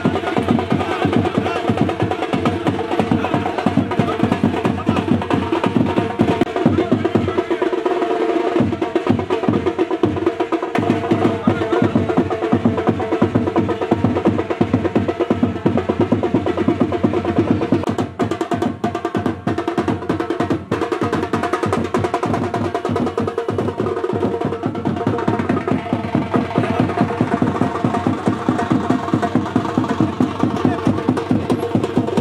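Loud, fast drumming over music, the beats running on without a break, with crowd voices underneath.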